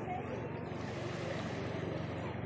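Small waves washing steadily at the shoreline, with faint voices in the background.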